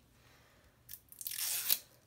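A small click, then a short tearing rip as the packaging seal on a bottle of shimmering gold body oil is torn open.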